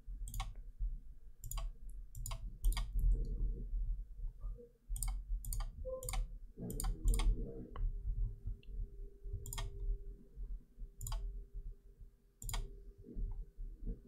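Computer mouse clicking: about fifteen sharp, irregular clicks, some in quick pairs, over a low hum.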